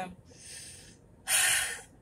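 A woman's faint breath, then a loud sniff about a second and a quarter in, lasting about half a second: a sniffle from having been crying.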